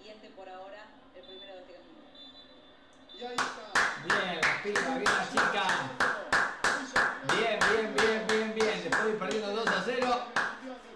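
One person clapping hands in a steady rhythm, about three claps a second, starting about three seconds in. Quieter talking runs underneath.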